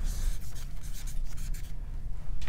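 Felt-tip marker scratching across chart paper in a run of short strokes, over a low steady room rumble.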